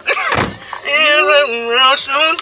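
A car door shuts with a short, heavy thud, heard from inside the cabin about half a second in, followed by a high, sing-song voice.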